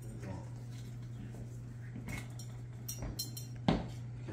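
Light clinks and knocks of glass bottles and dishes being handled on a buffet table, with one sharp, louder knock a little before the end, over a steady low hum.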